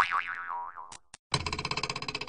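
Edited-in cartoon sound effects: a springy boing whose pitch wobbles as it dies away over about a second, then two short clicks, then a fast, evenly repeating pitched rattle.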